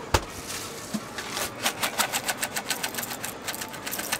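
A sharp knock right at the start, then a fast rattle of dry cornflakes being shaken out of a plastic container, several crisp clicks a second.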